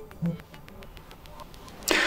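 A short low buzz about a quarter second in, typical of the Sony Xperia 1 V's vibration motor pulsing once as the phone powers on under a held power button; otherwise quiet.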